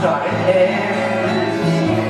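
A man singing into a microphone to his own strummed acoustic guitar.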